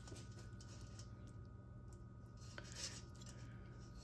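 Faint, soft sounds of a kitchen knife cutting navel-orange segments free of their membranes, with a small tick a little past halfway, over a low steady hum.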